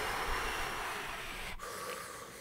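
A trumpeter's long, steady rush of breath close to the microphone, demonstrating a continuous flow of air. It lasts about a second and a half, then drops to a fainter hiss.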